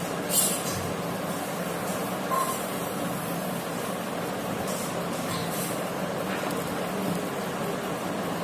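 Steady background hiss with a low hum, over which a paper napkin rustles softly a few times as it is handled and smoothed flat on a table.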